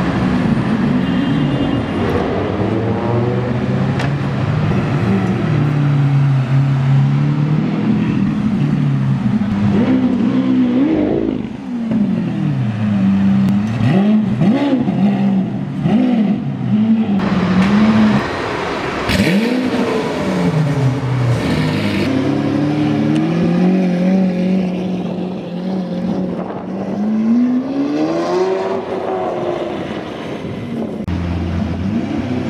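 Lamborghini Aventador V12 engines revving and accelerating past on the street. The pitch climbs and drops again and again with the gear changes, with a few sharp cracks from the exhaust about two-thirds of the way through.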